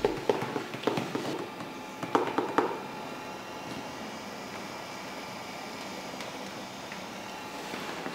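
Handling noise from a quadcopter drone with a phone strapped under it being moved about: a few light knocks and clatters in the first three seconds. After that there is only a quiet, steady room hum; the rotors are not spinning.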